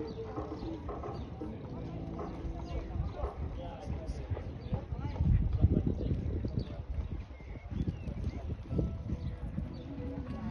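Show-jumping horse cantering on sand footing, its hoofbeats coming as dull thuds that are loudest about halfway through, with voices in the background.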